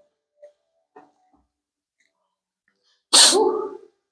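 A man sneezes once, a sudden sharp burst about three seconds in that fades within a second. Before it, near silence with a couple of faint small clicks.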